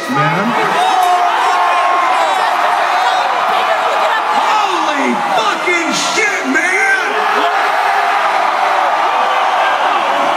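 Large concert crowd cheering, with many voices whooping and yelling over one another.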